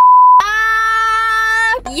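A short, pure test-tone beep of the kind that goes with colour bars, then a steady held note for a little over a second that cuts off just before talking begins.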